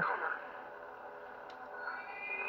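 Lightsaber idle hum from the saber's own speaker, a steady tone. There is a faint click about one and a half seconds in and a faint rising tone near the end.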